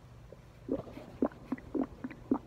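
A hungry stomach rumbling: a run of short, irregular gurgles that begins under a second in.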